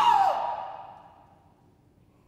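An operatic soprano ends a sung phrase with a falling slide in pitch. Her voice then dies away in the hall's echo over about a second, leaving a silent pause.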